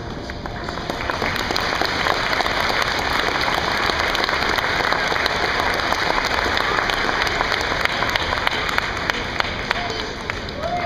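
Audience applauding after a song. The clapping swells over the first two seconds, then holds steady, with a few sharper single claps near the end.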